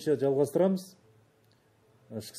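A man speaking for about a second, then a pause with only faint room tone.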